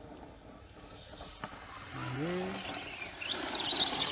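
High-pitched whine of an RC truck's 4000kV brushless motor and drivetrain as it drives over grass, faint at first, then wavering up and down in pitch and getting loud in the last second as the truck comes close.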